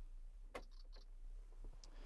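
Quiet room tone with a faint sharp click about half a second in, a few soft high ticks just after it, and another small click near the end.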